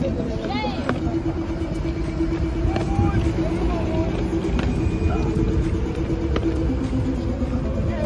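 Steady road traffic noise from cars on the adjacent street, with brief voices calling out and a few sharp clicks over it.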